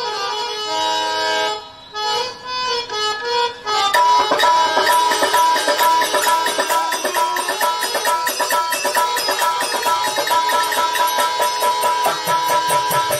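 Instrumental interlude of Indian devotional music: a harmonium plays held notes and short phrases alone with small pauses, then about four seconds in a dholak and other hand percussion join in a fast, steady rhythm under the harmonium's melody.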